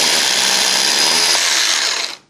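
Power drill boring through a concrete block wall, running at a steady pitch with a high whine, then stopping abruptly right at the end.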